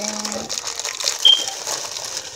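Plastic inner bag of boxed cake mix crinkling as the dry mix is shaken out into a plastic bowl, with a brief high squeak about a second in.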